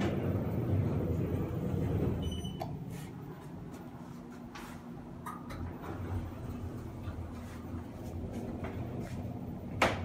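Schindler 3300 traction elevator: the car doors sliding shut with a low rumble, a short high beep about two seconds in, then a quieter steady low hum as the car travels between floors.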